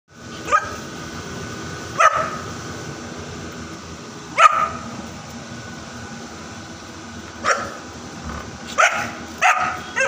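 Bullmastiff puppy barking: six short single barks, spaced a second or more apart at first and coming closer together near the end.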